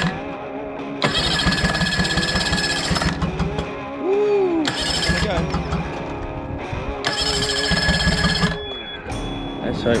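Electric starter cranking a 30 hp four-stroke outboard in three bursts, a rapid even chugging that does not catch, under background music. The motor was submerged when the dinghy flipped, and it is being turned over to get it running and dried out.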